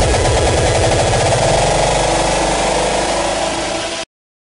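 Distorted hardcore electronic music: a dense, grinding sustained sound without clear beats, sagging slightly in level, then cutting off suddenly at the very end as the mix ends.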